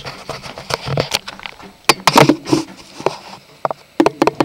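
Irregular clicks, knocks and rustling of hands handling things close to the microphone as gear is set up by a radiator.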